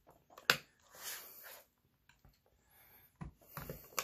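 Plastic case of a portable hard drive being pried apart with a thin metal tool: a sharp snap about half a second in as the wedged-together case pops loose, then scraping along the seam and a few smaller clicks.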